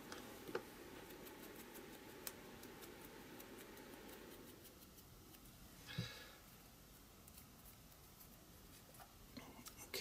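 Near silence: quiet room tone with faint paper-handling ticks, and one brief light knock about six seconds in.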